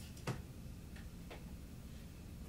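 A few faint, irregular clicks and taps of an oil-paint brush working on a canvas on the easel, the sharpest about a third of a second in, over a low steady room hum.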